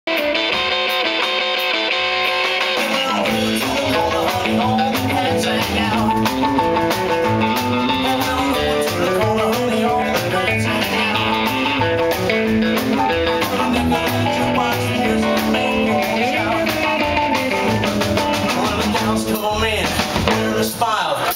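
Live rock and roll band playing: acoustic guitar, keyboard, upright double bass and drum kit. The bass and drums come in after the first couple of seconds.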